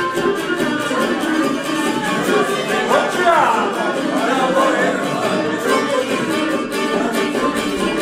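Live folk music played on a fiddle and a long-necked plucked lute together, the fiddle carrying the tune over the lute's strummed accompaniment.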